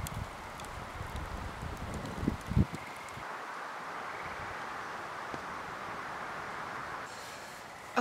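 Steady outdoor wind noise, with gusts buffeting the microphone in a rumble for the first couple of seconds, then an even rush.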